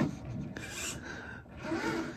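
Redcat Gen 8 V2 scale crawler working over bricks: its electric drivetrain whirring and its tires scraping and rubbing on the brick edges. The drivetrain noise is the loud running sound the owner accepts as a characteristic of this crawler.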